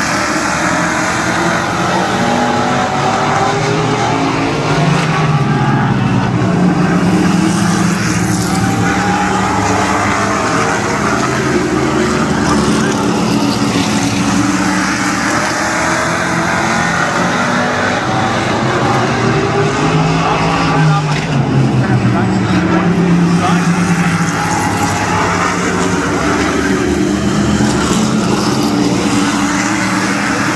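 A pack of Modified race cars running flat out on a paved oval, their engines gliding up and down in pitch through the corners. The sound swells twice, about fifteen seconds apart, as the pack passes closest.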